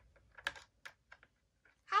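A few sparse light clicks and taps of hard plastic toy figures being handled on a plastic toy pirate ship, with quiet between them; a child says "Hi" at the very end.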